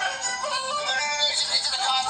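An auto-tuned remix of a puppet character crying, set to music: a pitch-corrected voice jumping between held notes. It plays from a screen and sounds thin, with no bass.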